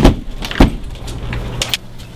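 Two sharp, loud thumps about half a second apart, followed by a few light clicks, over a low steady hum.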